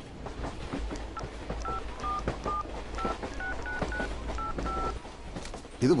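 Mobile phone keypad tones: about ten short two-note beeps as a number is keyed in, over the steady low rumble and faint clatter of a moving train carriage.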